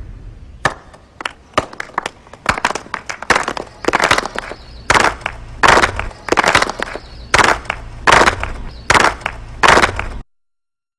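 A group of women clapping in unison, about two to three claps a second, starting sparse and growing louder, over a low steady hum.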